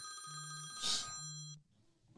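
A phone call ringing out over the stream's audio: a pulsing low ring tone with steady high tones above it. It cuts off about one and a half seconds in as the call is picked up.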